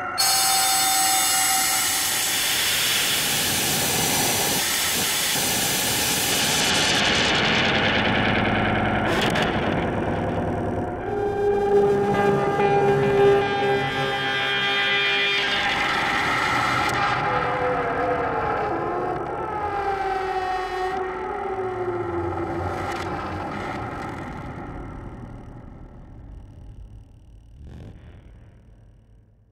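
Live synthesizer noise-and-drone music: a dense hissing noise wash whose high end is filtered down over the first ten seconds. Held synth tones follow, then slow falling pitch glides, and the whole texture fades out near the end.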